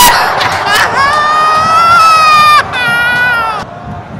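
Football stadium crowd reacting loudly to a near miss on goal. Over the crowd, one voice holds two long, high shouts at a steady pitch, and the noise drops away near the end.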